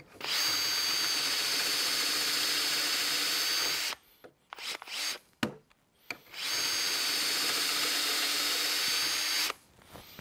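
Festool cordless drill boring two holes in a wooden board through a Rockler Beadlock jig's guide, running steadily for about three and a half seconds each time. Between the two holes there is a short pause with a few light knocks.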